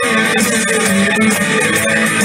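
Live soul band playing loudly and steadily, an instrumental stretch with guitar to the fore.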